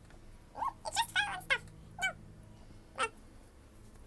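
Several short, high-pitched cries that bend up and down in pitch: a quick cluster about a second in, then one at about two seconds and one at about three seconds.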